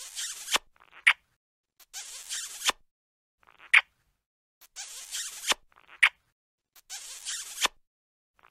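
Looped cartoon kissing sound effect: a half-second wet smooching noise ending in a low pop, followed by a short sharp smack. The pair repeats about every two and a half seconds.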